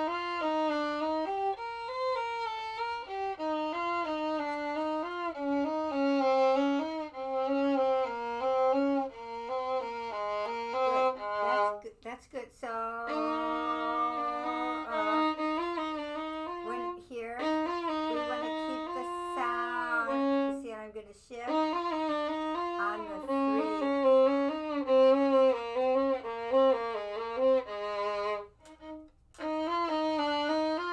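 A violin playing a study in quick, changing notes, with a few short breaks. Near the middle a second violin joins in for a stretch, playing along.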